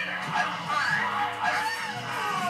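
Film soundtrack playing from a television's speakers: music with a voice crying out in rising and falling wails.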